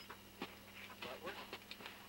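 Several short sharp clicks of climbing hardware being handled, a carabiner and pulley on a rope, the strongest about half a second in. Faint voices talk in the background.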